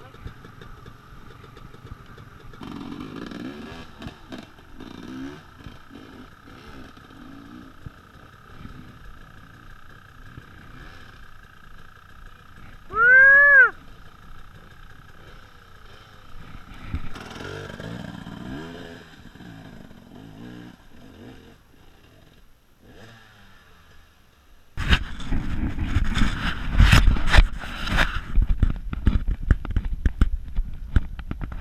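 Dirt bike on a night trail: a quiet stretch with a faint steady hum and low voices, broken near the middle by one loud rising-and-falling call about a second long. About 25 seconds in, the motorcycle engine comes on loud and uneven as the bike rides off over rough dirt.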